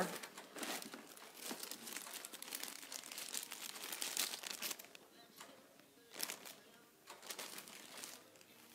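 Small clear plastic zip-top bag crinkling and rustling in the hands as it is opened and handled. The crinkling is dense for the first few seconds, then comes in a few short crinkles near the end.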